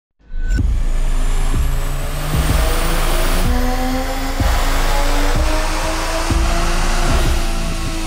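Turbocharged B58 straight-six of a tuned 2020 Toyota GR Supra pulling hard on a chassis dyno, its pitch climbing steadily as the revs rise toward redline. Music with a steady beat about once a second plays over it.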